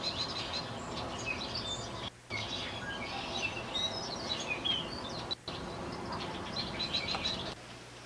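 Small birds chirping and calling over a steady outdoor background hiss, with the sound cutting out briefly twice.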